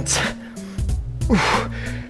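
Background workout music with a steady bass line, and a hard, breathy gasp from a man straining through dumbbell curls about halfway through.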